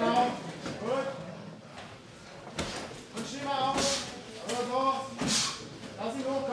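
Men's voices calling out, broken by a few short sharp noises, the clearest about two and a half seconds in.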